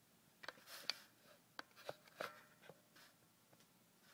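Faint scattered clicks and a brief rustle of small handling noises, about half a dozen light ticks over two or three seconds, in a quiet room.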